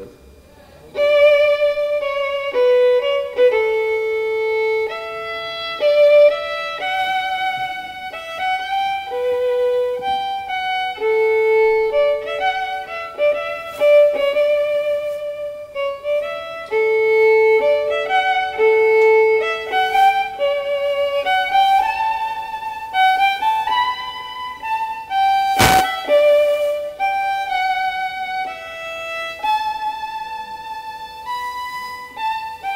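Solo violin playing a slow melody of held notes with vibrato, starting about a second in. Late on there is a single sharp knock.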